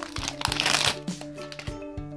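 Foil Pokémon card booster pack being pulled open and its cards slid out: a burst of rustling and crinkling about half a second in. Background music with a steady beat plays underneath.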